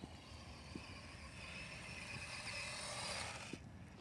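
Toy RC car's small electric motor whirring and its tyres rolling on concrete as it drives closer, growing louder, then stopping suddenly about three and a half seconds in.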